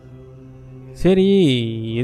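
A man's voice, close to the microphone, holds one long drawn-out vowel at a near-steady pitch, like a chanted syllable, starting about halfway through after a second of faint steady hum.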